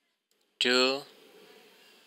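Speech only: a man's voice saying a single drawn-out word, "two", about half a second in, as one count in a slow count; otherwise faint room tone.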